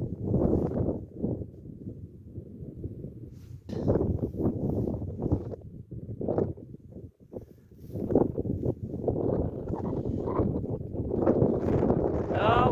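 Wind buffeting the microphone in uneven gusts: a low rushing noise that swells and drops, dipping briefly past the middle.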